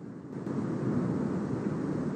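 Cumbre Vieja volcano erupting, heard through a live-stream microphone: a steady low rumbling noise that swells up about half a second in and holds.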